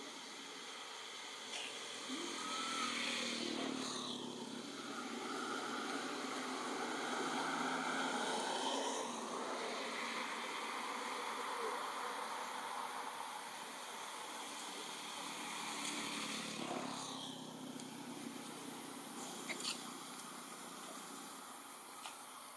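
Motor traffic passing, swelling up and fading twice, about three seconds in and again near sixteen seconds, over a steady high buzz of insects.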